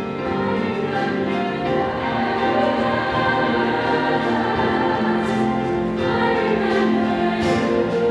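A large mixed high-school show choir singing sustained chords with live show-band accompaniment, growing a little louder in the first seconds.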